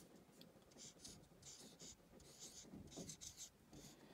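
Dry-erase marker writing on a whiteboard: a faint series of short pen strokes as digits are drawn.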